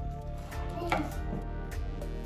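Scissors snipping through a rose stem with a sharp crunchy cut about a second in, over steady background music.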